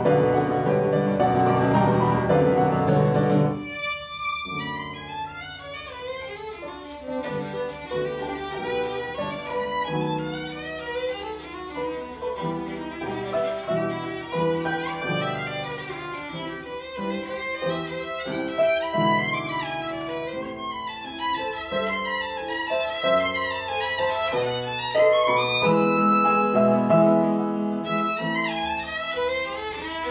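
Solo violin playing classical music with upright piano accompaniment. A loud, full passage gives way about four seconds in to quick running figures that climb and fall over the piano.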